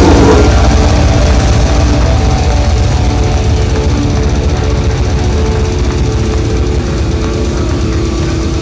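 Death metal band playing live and loud: fast, dense drumming under heavily distorted guitars holding notes, the whole band easing slowly down in level.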